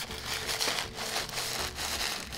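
White wrapping paper rustling and crinkling as it is pulled open by hand to unwrap a gift item.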